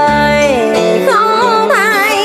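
Song with instrumental backing: a singer holds a long note that slides down in pitch about half a second in, then bends and wavers through an ornamented run.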